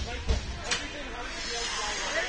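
Ice hockey rink sounds: two low thumps and a sharp clack in the first second, then a steady hiss, over spectator chatter.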